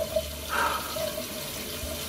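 Tap running steadily into a bathroom sink.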